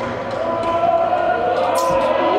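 Voices echoing through a large sports hall, rising into long held shouts, with one sharp smack near the end.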